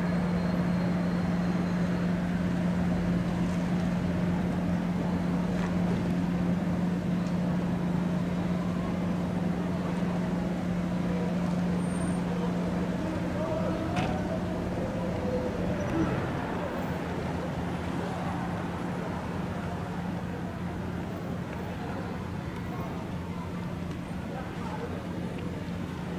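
Road traffic at a checkpoint: vehicles idling and passing with a steady low hum under the road noise, faint distant voices, and two small knocks about two-thirds of the way through.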